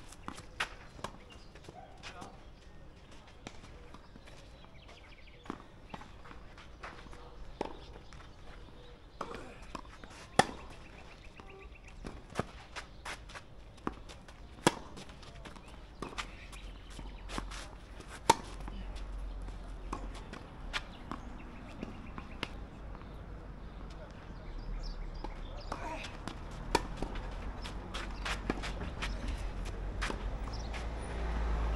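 Tennis balls struck by rackets and bouncing on a clay court during play: a string of sharp pops a few seconds apart, the three loudest near the middle, with soft footsteps on the clay between them. Wind rumbles on the camera microphone in the second half.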